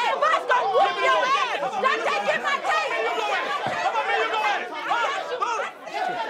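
Several people shouting over one another in a heated argument, with overlapping voices and no single clear speaker. The noise dips briefly just before the end.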